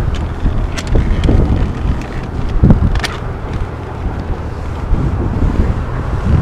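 Wind buffeting the camera's microphone, a rough low rumble throughout, with a few short clicks.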